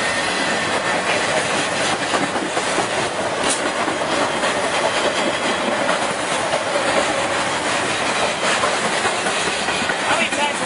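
Intermodal freight train carrying highway trailers rolling past close by: a steady, loud rush of wheel-on-rail noise with the clickety-clack of wheels over rail joints.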